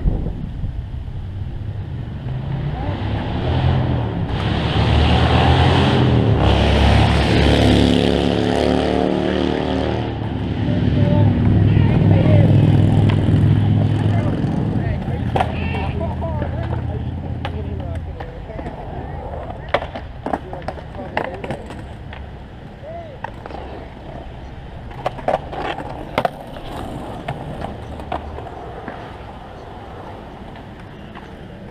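Skateboard wheels rolling over concrete, swelling to a loud rumble a few seconds in and fading away by about eighteen seconds, followed by a scatter of sharp clacks from skateboards.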